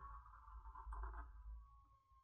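Near silence: quiet room tone with a faint steady high tone, and faint strokes of a Sharpie marker drawn over paper about the middle.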